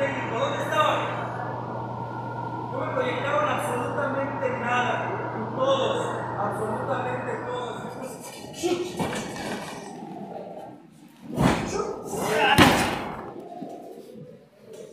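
Two heavy slams of wrestlers' bodies landing on a wrestling ring's canvas, about a second apart near the end, echoing in a large hall. Before them, a man talks over a PA microphone with a steady electrical hum under his voice.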